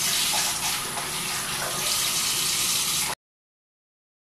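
Bathroom sink faucet running in a steady stream, as face cleanser is rinsed off; the sound stops abruptly about three seconds in.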